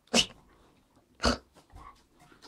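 Dogs play-fighting: two short, sharp huffs from a dog, about a second apart.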